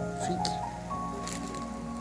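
Soft church keyboard music under the sermon: held, sustained chords, with the chord changing about a second in. A couple of short noises are also heard, one early and one in the middle.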